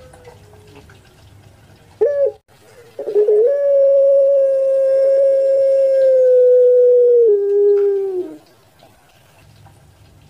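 Puter pelung (ringneck dove) giving its long coo: a short note about two seconds in, then a loud note held for about five seconds that steps down in pitch just before it fades.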